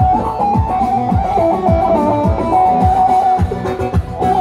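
Amplified live halay dance music: a high plucked-string melody with quick ornaments over a steady, deep drum beat about twice a second.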